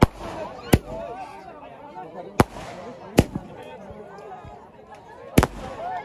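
Fireworks going off outdoors: five sharp single bangs at uneven gaps of about one to two seconds, over a crowd's chatter and shouts.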